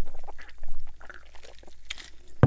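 A person gulping soda from a cup, several swallows in a row, with a sharp click near the end.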